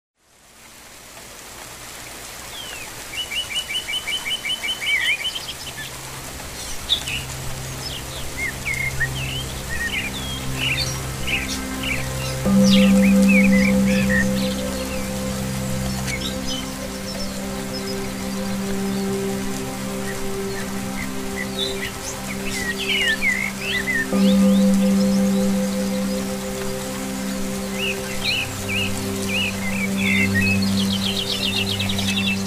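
Birdsong of several small birds, chirps and whistles throughout, with a fast trill of about eight notes a second a few seconds in, over a steady hiss of rain. Beneath it runs slow ambient music of long held low notes that swell about twelve seconds and again about twenty-four seconds in; the whole fades in at the start.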